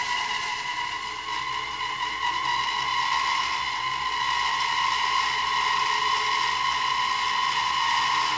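Woodworking band saw running and cutting through a thick block of timber, a steady high whine.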